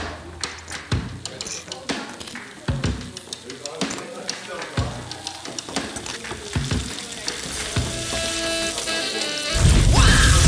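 Sound-designed soundtrack: music laid over kitchen sound effects, with short clicks and knocks and a frying pan sizzling, and a voice near the end.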